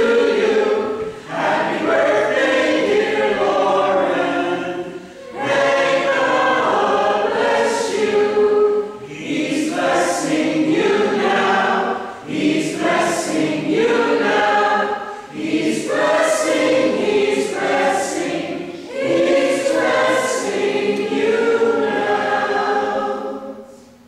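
A church congregation of adults and children singing together, phrase by phrase, with short breaks between the lines; the singing ends just at the close.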